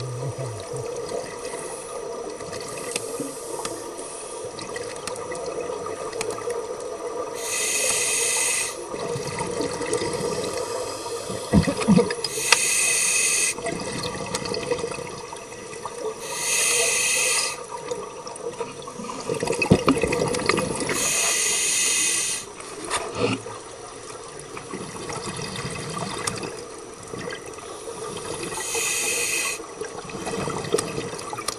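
Scuba regulator exhaust bubbles recorded underwater: five bubbling bursts, each about a second long, several seconds apart, as a diver breathes out, over a steady underwater murmur.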